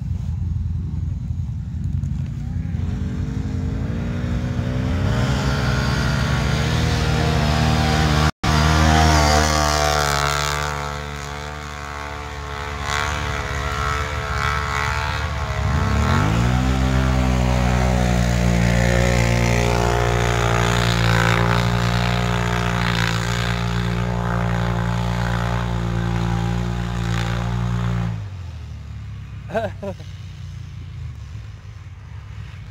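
Can-Am ATV engine run hard at high revs while its tyres churn through mud. The revs climb over the first several seconds, ease off in the middle, then sweep up sharply and hold high and steady for about twelve seconds before dropping away near the end.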